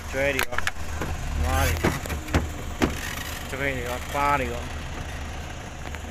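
A car engine running at low speed, a steady low hum, with a few sharp clicks or knocks in the first three seconds.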